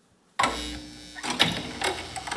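Near silence, then a documentary trailer's soundtrack cuts in sharply about half a second in with a low boom, followed by a held tone and several sharp clicks.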